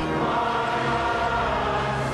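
Choral music: voices singing slow, sustained chords at an even level.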